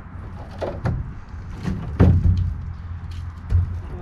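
A few knocks and thuds, the loudest about halfway through, as a tool probes the corroded steel framing at the bottom of an RV basement storage box, which is rotted.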